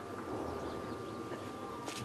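Faint open-air background noise from a seated crowd: a steady low rumble with a thin, steady high tone, and a single sharp click just before the end.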